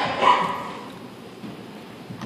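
A child barking like a dog: one loud, yelping bark just after the start that trails off within about a second.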